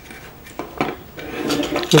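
Faint handling noise from a plastic bottle cap gun being moved on a wooden tabletop, with a couple of light clicks.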